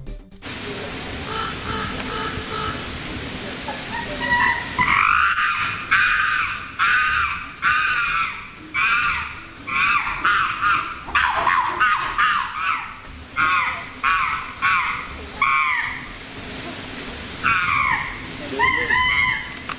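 Chimpanzee screaming in an agitated confrontation between chimps. About a dozen loud, high calls, each rising and falling in pitch, come in quick succession from about five seconds in, with another near the end.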